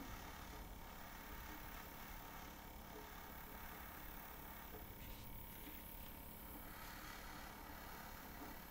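Faint, steady hiss of an airbrush spraying food colour on its lowest compressor setting, easing off briefly past the middle.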